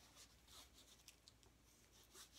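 Near silence, with faint, short, scratchy rustles of plastic-gloved hands handling a paint-covered canvas.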